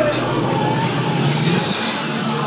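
Voices over a loud, steady rumble, with no clear words.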